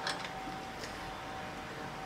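Drill press running steadily with a faint, even whine, a small center drill in the chuck ready to spot holes in a mild steel blank. A couple of light clicks in the first second.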